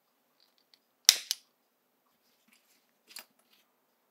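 Sharp clacks of small metal tools handled on a workbench: a loud double clack about a second in, then a softer pair of clicks about three seconds in.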